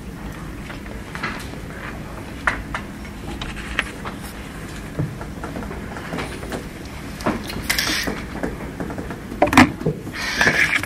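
Meeting-room background noise: a steady low rumble with scattered small knocks and rustles, and a louder rustle near the end.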